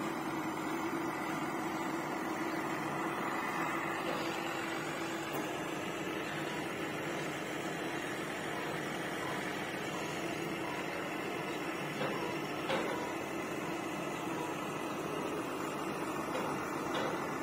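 Mobile crane's engine running steadily during a lift, a low hum in its drone fading about five seconds in, with a couple of faint clicks later on.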